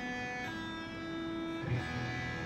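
PRS SE Custom 24 electric guitar being tuned: single strings plucked and left to ring one after another. A higher note comes in about half a second in, and a low string near the end.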